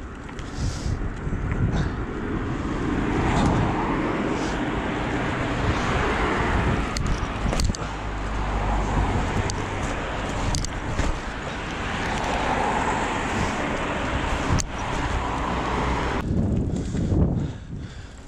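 Road traffic on a town street heard from a moving bicycle: a steady rumble of cars and tyres that swells and fades twice as cars pass, with a few sharp clicks and knocks from the bike.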